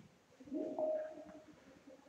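A bird's short, low cooing call, starting about half a second in and stepping up in pitch partway through.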